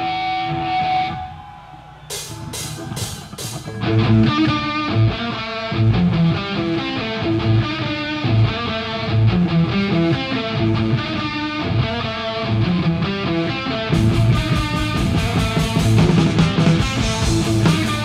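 Thrash metal band starting a song live: a held note, then four evenly spaced sharp hits, then the full band comes in with distorted electric guitar riffing, bass and drums. The sound grows fuller, with more cymbal, about fourteen seconds in.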